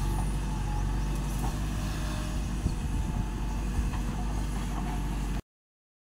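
Diesel engine of a JCB backhoe loader running steadily at work, with a couple of faint knocks. The sound cuts off suddenly near the end.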